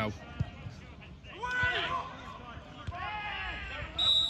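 Distant men's shouts and calls during open play in a football match, with a few dull thuds of the ball being kicked.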